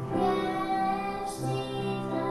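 A young girl singing into a microphone, with music accompanying her.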